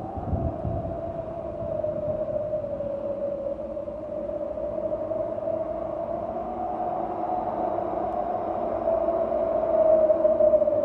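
A steady, droning soundtrack tone that wavers slowly up and down in pitch, with a fainter lower tone and a low rumble beneath it, growing slightly louder towards the end.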